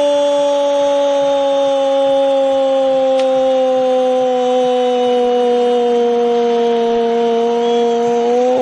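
A male football radio commentator's goal cry: the "gol" shout held as one long, loud note on a single breath, its pitch sinking slowly, calling a goal just scored.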